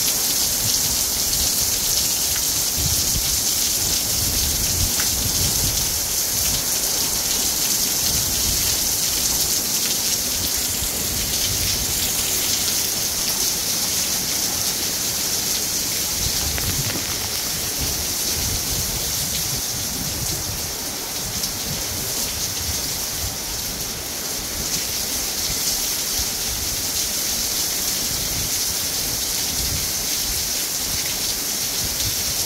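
Heavy rain pouring steadily in a severe thunderstorm, with an uneven low rumble of wind gusts underneath. The downpour eases slightly about two-thirds of the way through, then picks up again.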